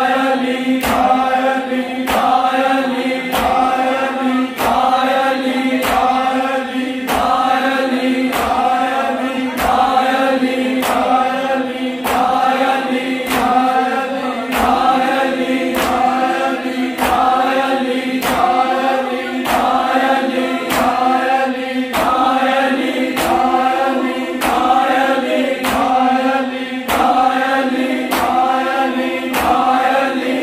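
Noha lament chanted in unison by a crowd of men over a steady held note, each phrase about a second long. Sharp hand slaps on bare chests (matam) land about once a second in time with the chant.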